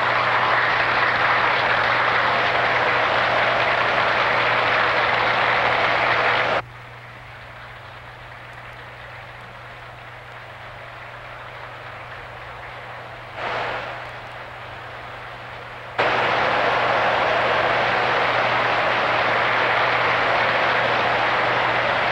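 Audience applauding, a dense even clapping noise that drops suddenly to a much quieter level about six and a half seconds in, swells briefly, and comes back just as suddenly at full strength near the sixteen-second mark. A steady low hum runs underneath.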